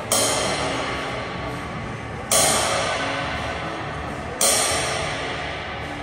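Large, heavily hammered Bosphorus ride cymbal struck with a drumstick three times, about two seconds apart. Each hit swells into a wash that dies away slowly over the next two seconds.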